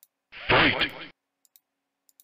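The Mortal Kombat announcer's "Fight!" sound clip playing as an alert, one short shout of under a second starting about a third of a second in. Faint mouse clicks come around it.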